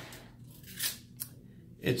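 Two brief, soft scraping sounds, under half a second apart, about a second in.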